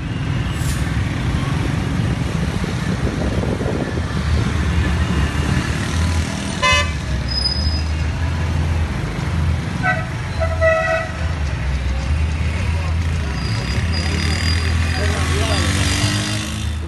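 Road traffic heard from inside a car: a steady engine and road hum, with car horns honking, once briefly about six and a half seconds in and twice more around ten to eleven seconds.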